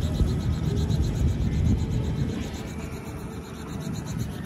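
Wind buffeting the phone's microphone: an uneven low rumble that rises and falls without any steady tone.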